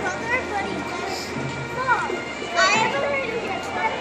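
Children's voices chattering and calling out, with a louder high-pitched cry about two and a half seconds in.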